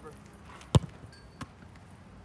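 A soccer ball kicked hard: one sharp, loud thud about three quarters of a second in, then a second, fainter thud a little over half a second later.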